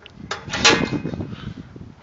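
Steel door of a home-built rocket stove being handled and lifted off: a click, then a loud metallic scrape about half a second in, fading to lighter rattling.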